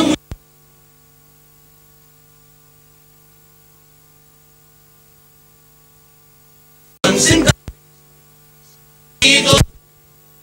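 Steady electrical mains hum where the programme sound has dropped out of the recording, broken by two short bursts of the group's singing about seven and nine seconds in.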